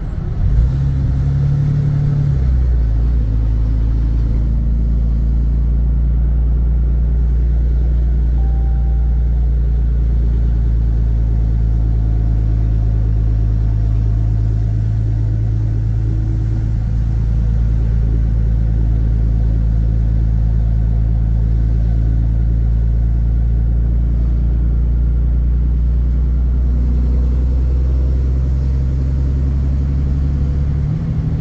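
Ram pickup's Cummins diesel heard from inside the cab while cruising, a steady low drone through its large-diameter aftermarket exhaust, a lot louder at cruising speed than a stock truck. The pitch steps down about two seconds in and rises again at the very end.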